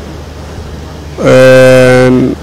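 A man's voice through a handheld microphone: a short pause over a steady low hum, then about a second in, one long held vowel at a steady pitch.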